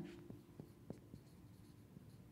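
Dry-erase marker writing on a whiteboard: a few faint short strokes and taps of the marker tip.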